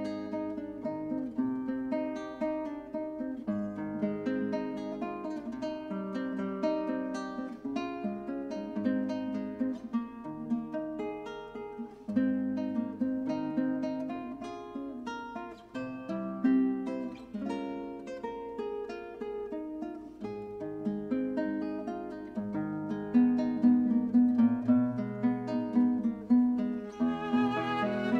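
Classical guitar playing a slow solo introduction of plucked melody notes over bass notes and chords. Near the end a violin comes in with sustained notes.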